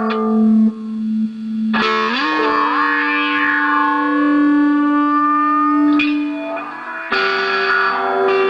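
Distorted electric guitar played through a Moog MF-102 ring modulator: sustained notes whose metallic overtones slide up and down in pitch. A new note is struck about two seconds in and bends upward, and another is struck near the end.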